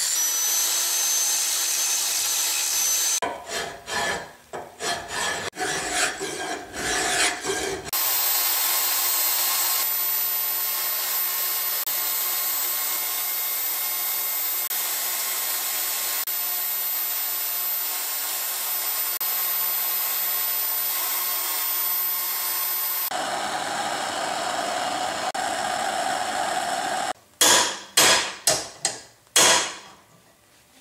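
A sequence of metalworking tool sounds. First an angle grinder's cutoff wheel runs with a high whine against cast iron, then come irregular hand-tool strokes. A long steady power-saw cut through steel tube follows, and near the end a quick run of hacksaw strokes.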